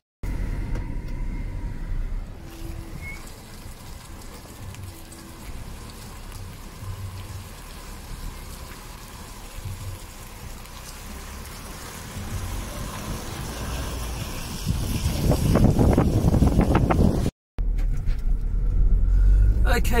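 Outdoor noise with a low rumble that swells to a loud stretch near the end. After a sudden break, a car drives along a dirt road, heard from inside the cabin as a steady low rumble of engine and tyres.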